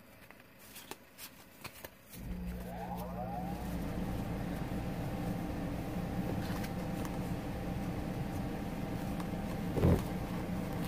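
A few light clicks of paper being handled. About two seconds in, a steady low mechanical hum starts, with a brief rising whine as it spins up, and keeps running. Near the end there is a loud thump as the camera is bumped.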